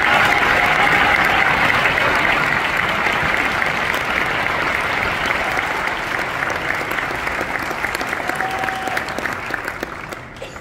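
Audience applauding, a dense, full round of clapping that slowly fades and thins out, with separate claps standing out more toward the end.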